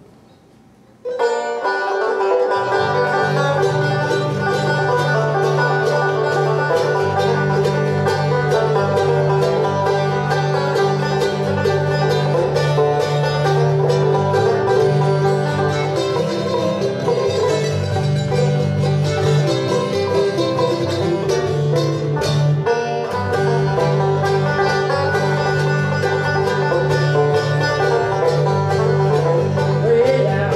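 Bluegrass band playing an instrumental passage on banjo, mandolin, acoustic guitar and upright bass, starting about a second in after a brief quiet moment.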